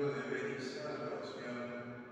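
A man's voice speaking: the priest praying aloud at the altar, arms raised.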